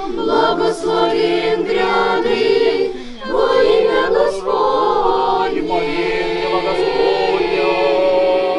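A choir of girls and young women singing an Orthodox church chant a cappella, many voices together in long held notes, with a short break between phrases about three seconds in.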